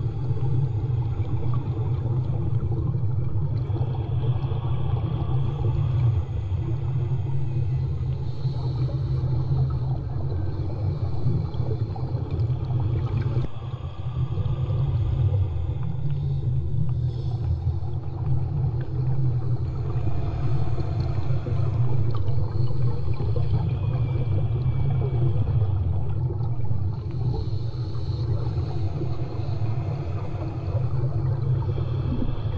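Steady, muffled low rumble of water heard with the microphone underwater, with fainter watery swishes coming and going above it.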